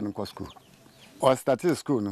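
Domestic chickens clucking in short calls twice, about a second apart, mixed with a man's voice speaking.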